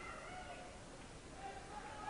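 Faint basketball-gym ambience: a low crowd murmur, with a thin, drawn-out high tone in the second half.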